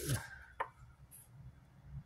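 One short, sharp tap about half a second in, from a printed photo card being handled and picked up; otherwise quiet room tone.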